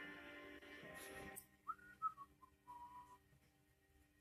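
Faint whistling: a few short notes that glide up and down, then one held note, after a brief cluster of steady ringing tones that stops about a second and a half in.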